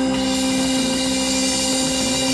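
Live band music: a sustained organ note held on a Technics electronic keyboard under a steady, noisy wash from the rest of the band.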